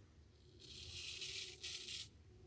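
Deep hollow-ground Palmera straight razor shaving lathered stubble against the grain under the neck: a faint, high scraping that starts about half a second in. The stroke goes smoothly with no drag or resistance, the sign of a keen edge.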